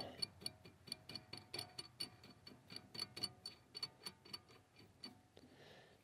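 Faint, quick light ticks, several a second, as a 24 mm nut is run down the threaded rod of a ball joint puller; the ticking stops about five seconds in.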